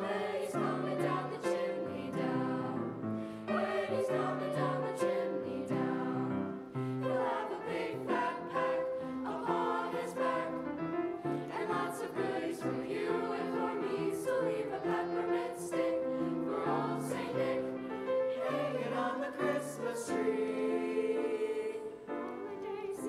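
High school choir singing sustained, legato phrases, accompanied by a full orchestra.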